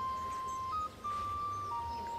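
Background music: a plain melody of a few long held notes, each a single clean tone, stepping to a new pitch every half second or so, with a brief break about a second in.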